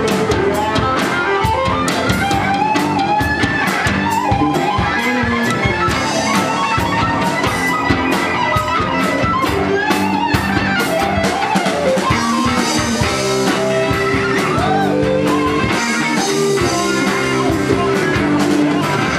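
A live band playing an instrumental passage: electric guitars and electric bass over a drum kit, with a fiddle bowed alongside. The playing is loud and steady.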